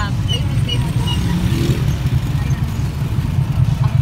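Low, steady engine and road rumble heard from inside a moving vehicle driving through town traffic.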